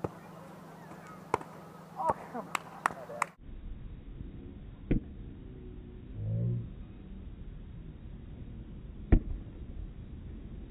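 Hands striking a volleyball on a sand court: sharp slaps, several quick ones in the first three seconds, then one about five seconds in and the loudest just after nine seconds. A short vocal call comes in the middle.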